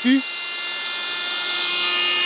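A small electric motor running with a steady high whine made of several fixed tones. It switched on abruptly just before and holds unchanged throughout.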